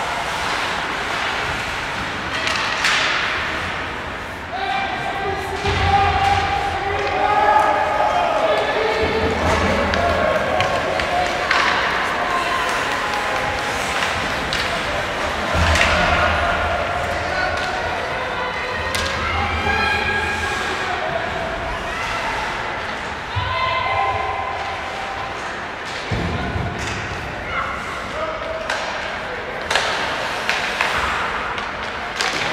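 Ice hockey game heard from the stands: people's voices nearby, with sharp knocks and thuds from the puck, sticks and boards every few seconds.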